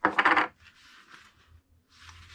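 A short, loud metallic clatter lasting about half a second, like a small metal part rattling onto a plywood workbench, followed by softer scraping as it is handled.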